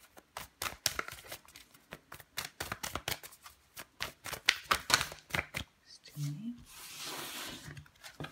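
Tarot cards being shuffled by hand, a quick, uneven run of card clicks and flicks for about six seconds. Near the end, a brief low voice sound and a soft breathy hiss.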